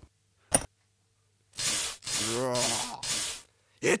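A sharp click of the laboratory switch being flipped about half a second in. About a second later comes a hissing buzz with a wavering pitch, broken twice, for about two seconds.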